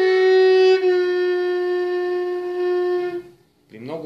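A Bulgarian gadulka bowing a long, steady F-sharp on its E string. About a second in, the pitch drops slightly and the note gets softer as the finger pressure on the string is eased, which gives the nasal, out-of-tune tone of too light a press. The note stops shortly before the end.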